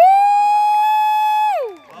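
A person's long, high "woo!" whoop. It rises quickly to one held note for about a second and a half, then slides down and stops near the end.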